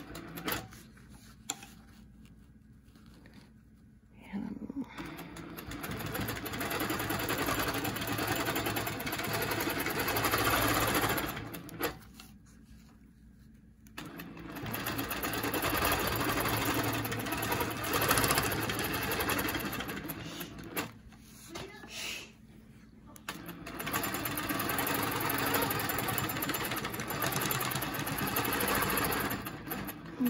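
Handi Quilter longarm quilting machine stitching in runs of several seconds each, stopping three times for a couple of seconds between runs.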